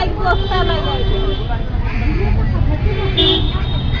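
Steady roadside traffic rumble, with a vehicle horn tooting about three seconds in. A man says a word near the start.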